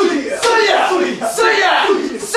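Loud rhythmic shouting of a chant, with a cry roughly once a second.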